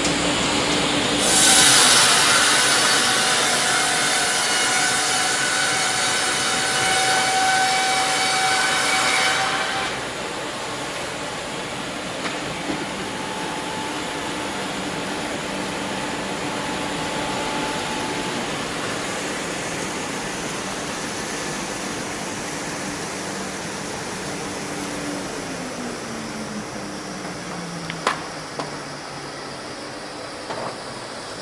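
Perun MDS-170 electric multi-rip circular saw (two 45 kW motors) ripping a cant into boards at its top feed of 30 m/min: a loud, whining cut from about a second in until about ten seconds, which stops sharply. The blades then run on with a quieter steady hum that drops in pitch near the end, with a couple of sharp knocks.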